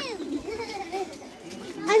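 Children's voices talking and calling out, opening with a high falling squeal.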